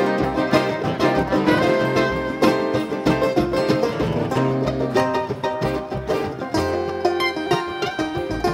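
Live bluegrass string band playing an instrumental break: acoustic guitar strummed under quick picked lead lines, with steady bass notes underneath.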